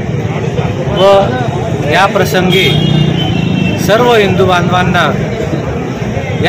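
A man speaking Marathi in short phrases with pauses between them, over a steady low background hum.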